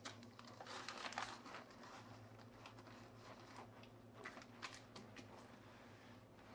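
Near silence with a low steady hum, broken by a few faint crinkles of plastic zip-top bags being handled and set in place, about a second in and again around four to five seconds in.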